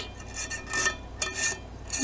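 Light metallic clinks and scrapes of a titanium camping pan's thin folding wire handle being worked against the pan, several short ticks spread over two seconds.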